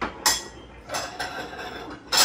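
Ceramic plates and bowls clinking and clattering as they are set onto a stack on a kitchen cabinet shelf, with a few sharp hits in quick succession in the first second.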